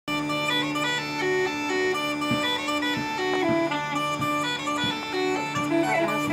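Bagpipes playing a tune: a melody stepping between notes over a steady low drone, broken by quick grace notes between melody notes.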